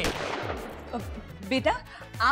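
A sudden crash-like hit that dies away over about a second, a dramatic sound effect laid over a shocked reaction shot.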